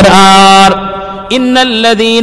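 A man reciting the Qur'an in Arabic in a melodic chanted style, holding long notes. One held note fades about two-thirds of a second in, and a slightly higher note is held from just past halfway.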